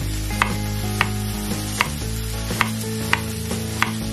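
Chef's knife slicing through fresh ginger and striking a wooden cutting board: about six sharp knocks, spaced unevenly about half a second to a second apart.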